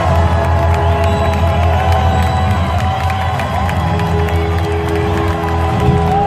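A live band holds a sustained closing chord under strong bass, with a crowd cheering over it. The music drops away right at the end.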